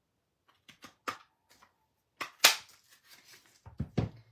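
A handheld Stampin' Up! heart-shaped paper punch pressed down through cardstock and a post-it note, giving one loud sharp snap about two and a half seconds in, after a few lighter clicks of handling. Near the end comes a dull knock as the punch is set down on the table.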